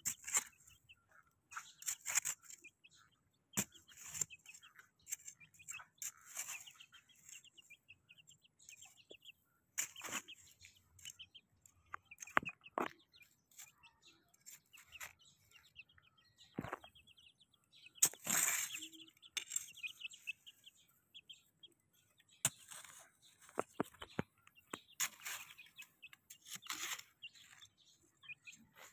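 Young chickens peeping in runs of short, high chirps while they scratch and peck in loose dirt and gravel, with scattered clicks and scuffs. There is a louder rustle about 18 seconds in.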